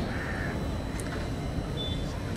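A crow caws faintly once, just after the start, over a low steady background rumble.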